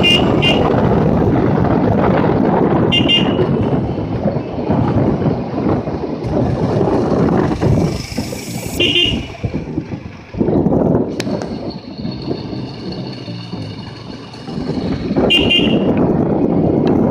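Wind rushing over the microphone of a moving motorcycle, easing briefly twice in the second half. Short horn beeps sound four times, the first a quick double.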